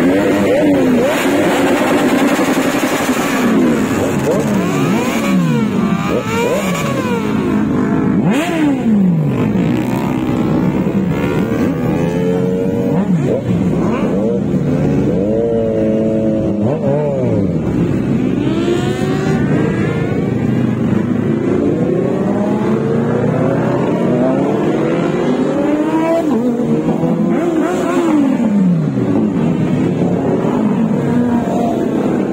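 A group of Kawasaki Ninja sport motorcycles running close together, several engines revving at once so that the pitch keeps rising and falling in overlapping sweeps.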